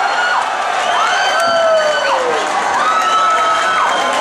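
Crowd cheering a knockout in a Muay Thai stadium, with several long, high shouts that rise, hold and fall over the din.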